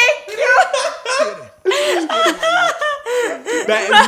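A woman and a man laughing in several bursts, with a short break about one and a half seconds in.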